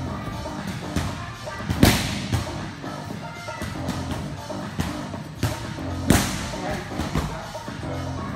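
Two loud smacks of strikes landing on hand-held striking pads, about two seconds in and about six seconds in, over background music.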